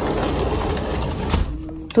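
Sliding glass balcony door rolling along its track, a grainy rumbling rattle that ends in a single knock about one and a half seconds in as the door shuts.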